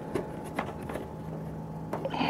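A steady low hum from the running truck, with a few faint light clicks.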